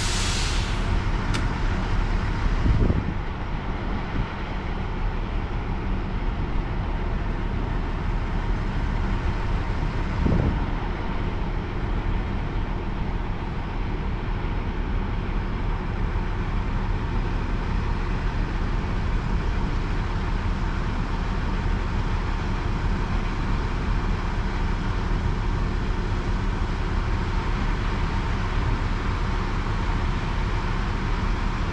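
Heavy diesel engine of a Grove mobile crane running steadily under load while it holds the chiller, with a short hiss right at the start and two brief swells in engine sound about three and ten seconds in.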